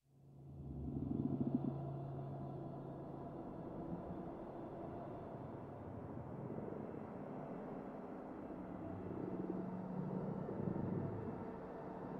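Fluffy Audio AURORROR 'Worst Nightmare' horror soundscape patch in Kontakt, played from a keyboard: a dark, rumbling synthesized drone that fades in over about a second, holds steady low tones and swells again near the end.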